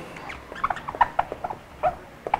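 Dry-erase marker squeaking on a whiteboard in a quick, irregular run of short squeaks as letters are written.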